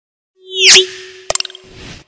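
Logo-intro sound effects: a swelling whoosh with sweeping pitch glides peaks just under a second in, over a low steady hum. A quick rattle of sharp clicks follows a little past a second in, then fades.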